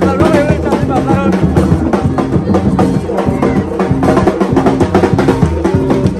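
A live gagá band: hand drums beaten in a fast, steady, dense rhythm, under short repeated low hooting notes from bamboo trumpets (vaccines), with the voices of the crowd mixed in.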